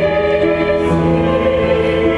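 A male and a female voice singing a duet together, holding long sustained notes that shift pitch about a second in.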